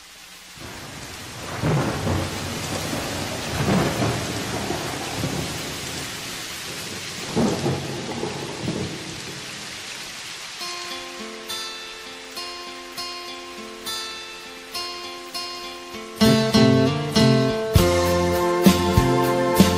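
Steady rain with several rolls of thunder, then a melody of single ringing notes coming in over the rain about ten seconds in, and a full band with bass joining near the end: the opening of a romantic grupera song.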